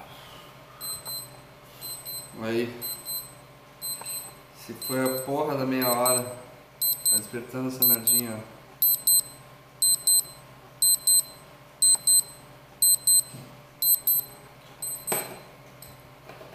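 Digital timer alarm beeping high and shrill, about two single beeps a second at first and then quick groups of four about once a second: the time limit of the eating challenge has run out. A man's voice sounds briefly a few times, and there is a click near the end.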